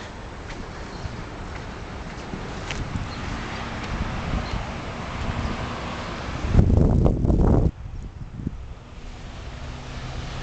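Wind blowing over the microphone with a steady rustle, growing stronger over the first few seconds; a heavy gust about six and a half seconds in booms for about a second and cuts off suddenly.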